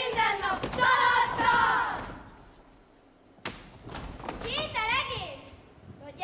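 Children's voices calling out in a chanted game rhyme, fading away about two seconds in. A single sharp thud about three and a half seconds in, then a child's voice calls out again.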